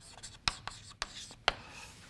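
Chalk writing on a blackboard: light scratching strokes broken by several sharp taps of the chalk against the board.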